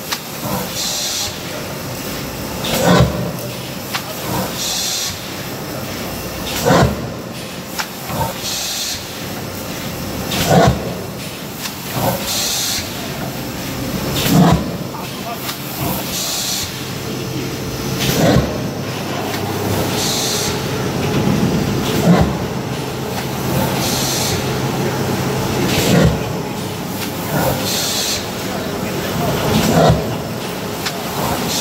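Automatic pulp-moulding egg tray forming machine running in a steady cycle: a sharp knock about every two seconds, and a short burst of air hiss about every four seconds, over a continuous machine hum.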